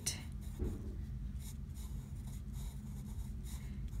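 Drawing pencil shading on a paper Zentangle tile: a run of short, light scratching strokes of graphite on paper.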